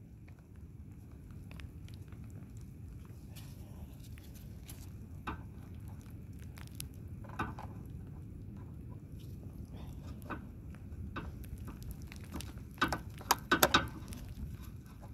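Low rumble of wind on the microphone, with scattered small clicks and taps from gloved hands handling the mower's fuel pump and fuel lines. A quick run of clicks comes near the end.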